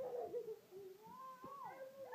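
A toddler's high-pitched wordless vocalizing, a long sing-song sound sliding up and down in pitch, with a couple of faint taps.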